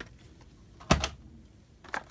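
A few sharp plastic clicks and taps from blister-carded die-cast toy cars being handled and swapped. The loudest is a quick double click about a second in, with another click near the end.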